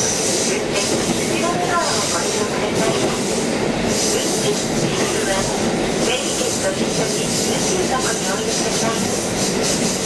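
KiHa 40 series diesel railcar running steadily along the line, its engine and wheels on the rails heard from inside the car.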